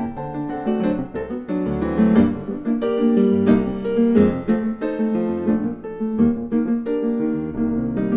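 Solo concert grand piano playing classical music: quick runs of notes over full, sustained chords, continuing without a break.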